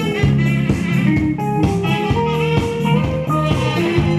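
A live band plays an instrumental passage of a new Eritrean song: an electric bass line under held saxophone melody notes, over a steady beat.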